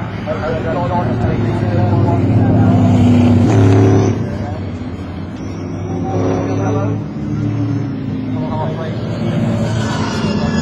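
Engines of several racing stock cars passing in a group, their pitch rising and falling with engine speed as they go by. Loudest about three to four seconds in, easing off around five seconds, then building again.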